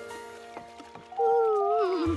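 Cartoon background music of soft held notes. About a second in, a louder wavering voice-like sound slides downward in pitch, a cartoon monkey's contented cooing.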